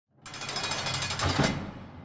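A rapid rattling burst from the intro sound design, about fifteen strikes a second, that holds for just over a second and then fades out.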